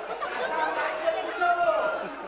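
Speech only: actors speaking their lines on stage.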